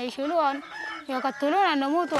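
A woman speaking in Arabic, with a rooster crowing behind her voice.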